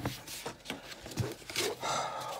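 A young man's frustrated groan and loud sighing breath after making a mistake on a revision card.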